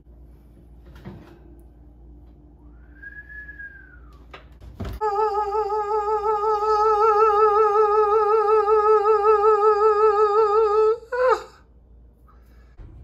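A voice holds one long sung note with vibrato for about six seconds, ending in a quick upward slide. Before it there is a faint steady hum and a sharp click.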